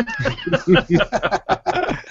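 Men chuckling, a run of short laughs in quick succession.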